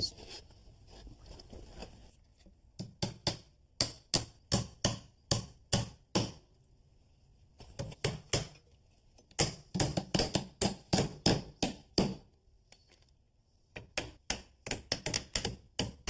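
Hammer driving nails through wooden filler strips into a subfloor: three runs of quick, sharp blows, several a second, with short pauses between.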